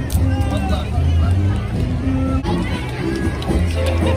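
Brass band music playing held notes that step from one to the next, over the chatter of a crowd.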